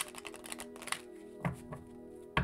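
A deck of cards being handled and shuffled by hand, with a quick run of light clicks in the first second and a couple of louder taps near the middle, over steady soft background music.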